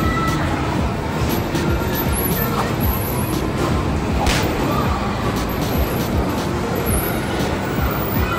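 Bumper cars running around the rink: a steady low rumble with scattered knocks, the sharpest about four seconds in, over background music.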